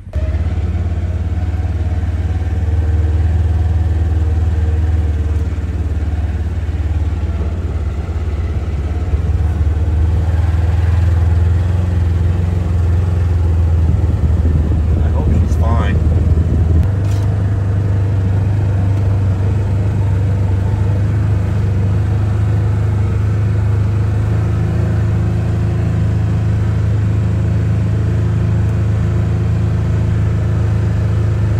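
Side-by-side utility vehicle's engine running steadily, a continuous low drone, with a brief rising squeak about fifteen seconds in.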